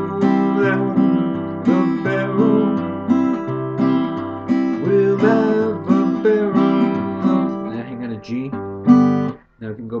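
Acoustic guitar playing a polka accompaniment: single bass notes on the low strings alternating with strummed chords in a steady boom-chick rhythm, ending on one loud chord near the end that rings briefly and stops.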